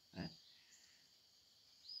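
Near silence: faint outdoor ambience, after one short spoken word at the start.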